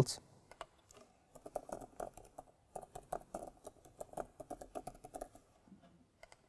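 Typing on a computer keyboard: a run of quick, faint keystrokes that starts about a second in and stops shortly before the end.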